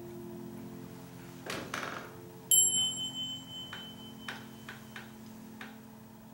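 Grand piano notes ringing on and slowly fading, then a sharp clink about two and a half seconds in that rings briefly with a high, bell-like tone, followed by a few light clicks and knocks as things are handled at the piano.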